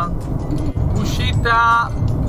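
Steady low road and engine rumble inside the cab of a Pössl Roadcruiser camper van on a Citroën base, cruising at motorway speed. Music and a brief voice sound over it about one and a half seconds in.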